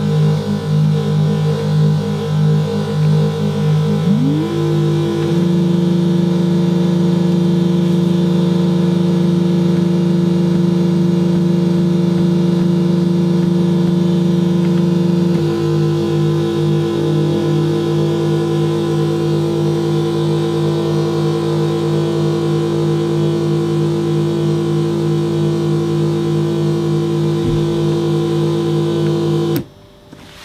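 Homemade noise synthesizer with an optical filter droning loudly: a stack of steady tones with a fast pulsing in the low notes. About four seconds in, one tone glides up and holds, and the whole sound cuts off suddenly near the end.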